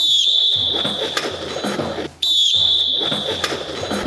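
A referee's whistle blown twice, two long steady high-pitched blasts of about two seconds each, signalling the start of a timed sit-up test, with thumps and rustling of bodies moving underneath.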